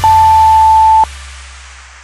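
Workout interval timer beep: one long, steady, high-pitched tone lasting about a second, marking the end of an interval. A dance-music track fades out under and after it.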